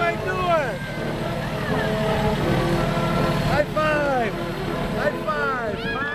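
Fire engine idling with a steady low rumble, under a crowd's overlapping voices with high, excited calls rising and falling.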